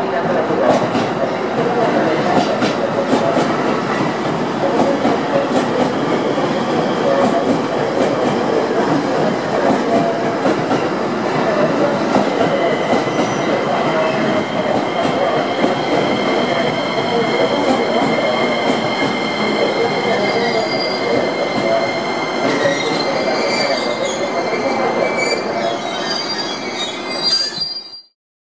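JR East E257 series electric multiple unit arriving at a platform: steady rumble of the cars rolling past, with a few sharp clicks in the first few seconds. From about halfway a steady high squeal joins in and grows stronger as the train slows to stop, until the sound cuts off suddenly.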